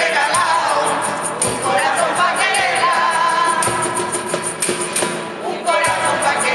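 Coro rociero (Andalusian festive choir) singing a misa rociera in unison to Spanish guitars, over a steady clicking beat of hand percussion.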